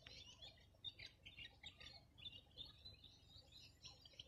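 Faint chirping of small birds: many short, rapid chirps throughout.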